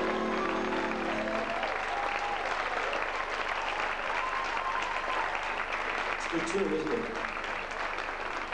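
Showroom audience applauding as the big band's final held chord dies away about a second and a half in, with some scattered voices over the clapping.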